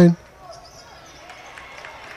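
Faint natural sound of a basketball game in a gym: a basketball bouncing on the hardwood court as players run the floor.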